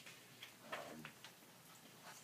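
Near silence: quiet room tone with a few faint, irregular clicks in the first half and a brief faint murmur near the middle.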